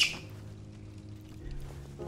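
Soft background piano music with held notes and a lower note coming in near the end. A single short, sharp click right at the start is the loudest sound.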